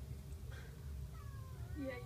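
Kitten mewing, with short gliding calls starting about a second in and the loudest near the end.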